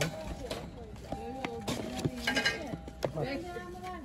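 Indistinct voices talking, over a few sharp clicks and knocks as a cardboard box of glass espresso cups is handled and opened.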